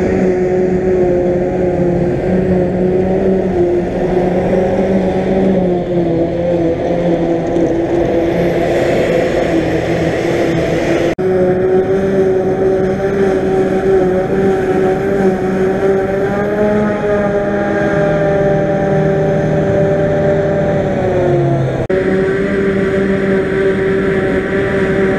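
Claas Jaguar 880 self-propelled forage harvester running at working revs while chopping grass, a steady engine drone with a humming whine from the chopper, mixed with the tractor running alongside. The sound breaks off abruptly about eleven seconds in and again near the end. The pitch sags briefly just before the second break.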